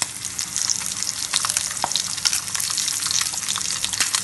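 Bacon sizzling in its own fat in a frying pan: a dense, steady crackle with many sharp spits and pops throughout.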